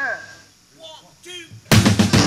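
Amplified blues harmonica playing alone: a falling slide, then a few short rising-and-falling notes. Near the end the full band crashes back in loudly with drums, cymbals and electric guitar.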